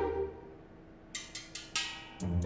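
Four quick knocks, a little over a second in, after a short music note fades out.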